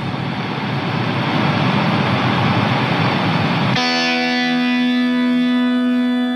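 Live band music: a dense wash of noisy sound that cuts off suddenly nearly four seconds in, as a steady held chord of many sustained tones begins.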